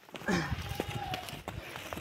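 Footsteps on a dirt road, with a short vocal sound near the start.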